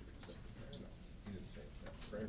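Faint low murmur of people talking, with a few scattered light clicks at irregular moments.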